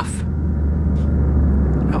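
Low, steady starship engine rumble from a sci-fi flyby sound effect, slowly growing louder as the ship passes.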